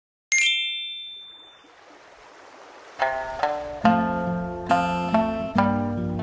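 A single bright chime rings out and fades away, then about three seconds in, plucked-string background music begins, with notes struck in a steady rhythm.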